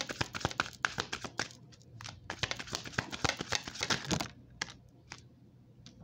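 A deck of tarot cards being shuffled by hand: rapid papery clicking in two runs, the second stopping about four seconds in, followed by a few single card clicks.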